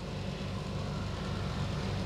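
Steady low hum and rumble of background noise, with no distinct event standing out.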